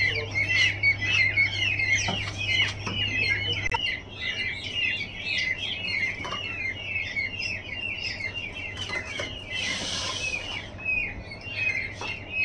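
A group of newly hatched peachicks peeping continuously, many short, high, downward-sliding chirps overlapping. A low steady hum stops about four seconds in, and a brief rustle comes about ten seconds in.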